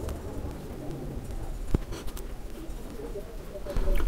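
Faint bird calls in the background, with one sharp click a little under two seconds in.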